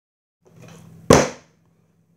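A juice carton flipped into the air and landing hard on a wooden table, knocking over onto its side: one loud thud about a second in, the sign of a failed flip. Faint handling noise and a low hum come before it.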